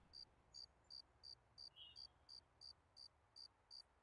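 Faint, even chirping of a cricket, about three chirps a second, over otherwise near silence.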